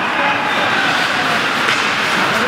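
Steady rink noise during ice hockey play: skates on the ice mixed with faint distant shouts from players.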